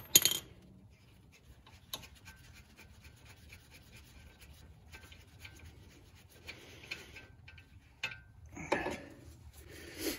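A sharp metal clink at the start, then faint scraping and rubbing as the nut is spun off the threaded lower strut-to-knuckle bolt by hand, with a few light clicks.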